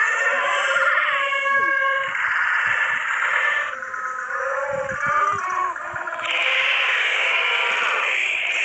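Tinny, muffled snippets of film soundtrack audio, music with gliding voice-like tones, cutting abruptly to a different clip twice along the way.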